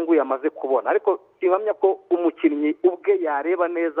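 Only speech: one man talking without pause, his voice thin and narrow as it comes over a telephone line.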